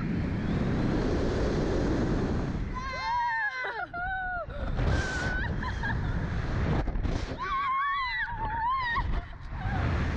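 Wind rushing over the microphone of a launched slingshot ride capsule, with high-pitched screams from the riders, one burst about three seconds in and another around eight seconds.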